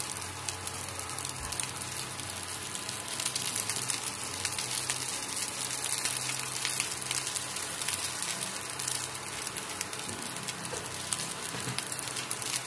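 Rice and garlic frying in a stainless steel wok: a steady sizzle full of fine crackles, with a faint low hum underneath in the first half.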